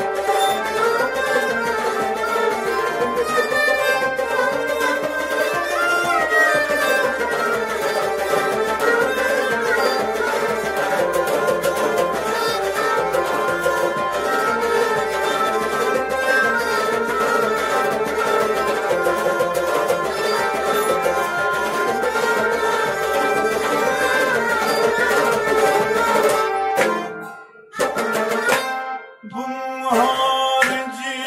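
Kashmiri Sufi ensemble playing without singing: harmonium, a bowed fiddle, a plucked long-necked lute, and a pot drum keeping a steady rhythm. Near the end the music drops away for about two seconds, then starts again.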